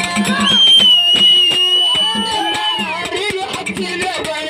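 Live dollina pada, Kannada folk singing over a steady beat of drum strokes. A long, very high note is held for about two seconds in the middle.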